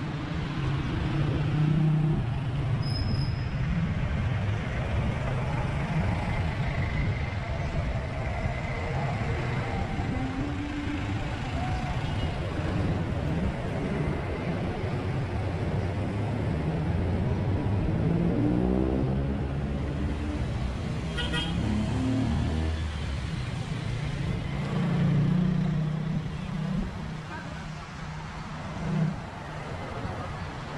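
Street traffic heard from a moving bicycle: small motorcycle and tricycle engines running and passing, with road noise. An engine note rises about two-thirds of the way through.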